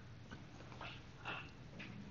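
Faint room tone in a lecture room during a pause, with a few soft, short sounds.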